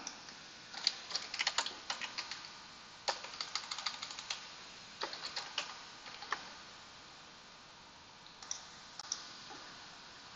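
Computer keyboard typing in quick runs of keystrokes for about six seconds, then a pause and a few scattered keystrokes near the end.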